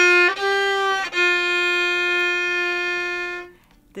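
Fiddle playing a country fill in double stops, two strings bowed at once: a short phrase of bowed notes ending in a long held note that stops about three and a half seconds in.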